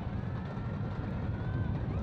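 Outdoor stadium ambience: a steady low rumble of wind on the microphone, with faint thin tones above it.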